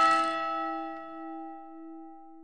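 A single bell-like note struck once as the final note of the intro music, ringing out and fading away over about three seconds.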